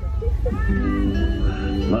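Recorded show music playing sustained chords through loudspeakers, over a steady low rumble.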